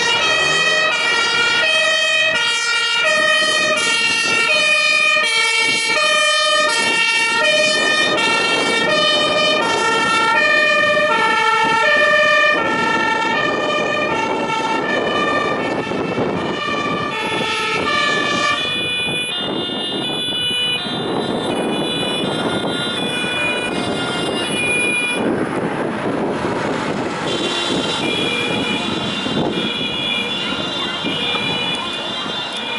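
Emergency vehicle two-tone siren, the German Martinshorn, alternating between a high and a low note at a steady rate. It grows fainter past the middle under a wash of street and traffic noise.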